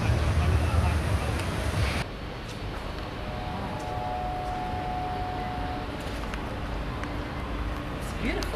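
Outdoor background noise: a heavy low rumble that cuts off suddenly about two seconds in, then a quieter steady hum with a faint held tone in the middle.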